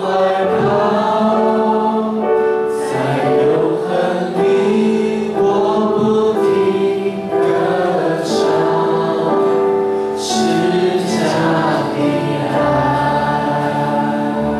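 A congregation singing a slow Chinese worship song together, led by a worship leader and accompanied by acoustic guitar, with long held notes.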